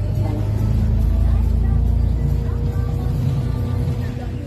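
Green minibus driving, heard from inside the cabin: a deep, steady engine and road rumble, with music and faint voices underneath.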